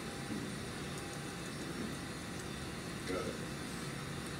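Steady room noise with a low hum, and a brief faint voice about three seconds in.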